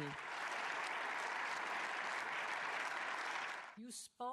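Steady applause from an audience, an even wash of many hands clapping, that cuts off abruptly near the end.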